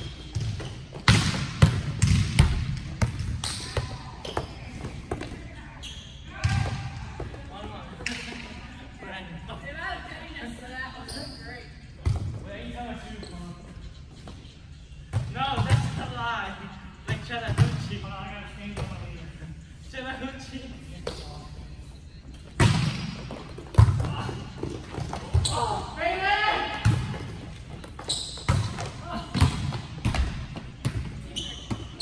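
Volleyballs being struck and bouncing on a gym floor, a string of sharp smacks and thuds that echo in a large hall, with players' voices between them.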